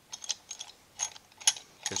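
Steel C-clamp being unscrewed from a freshly pressed-in pump bearing: a run of irregular sharp clicks and ticks from the clamp's threaded screw and washer, the loudest about one and a half seconds in.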